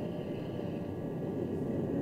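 Grumman F-14A's twin jet engines during a landing rollout just after touchdown, a steady rushing noise.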